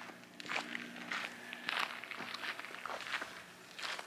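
Footsteps crunching on a gravel driveway, a few irregular steps, with a faint steady low hum underneath for the first couple of seconds.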